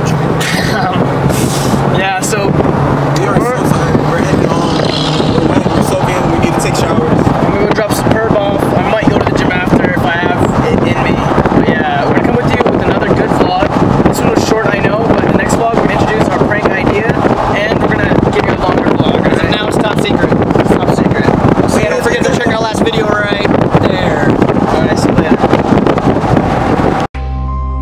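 Voices talking and laughing inside a moving car, loud and continuous over the cabin's road noise.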